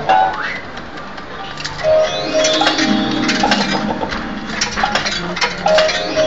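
Barcrest Rainbow Riches fruit machine playing its electronic sound effects and jingles: a short rising sweep near the start, then from about two seconds in a run of beeping notes and melody with sharp clicks as the game returns to the reels.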